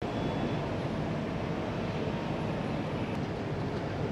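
Steady low rumble with a hiss above it, cutting in abruptly: outdoor harbour noise around a fireboat spraying water from its water cannons.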